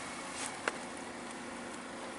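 Steady low hum of the Buick Envision's 2.5-litre four-cylinder engine idling, with two faint clicks about half a second in.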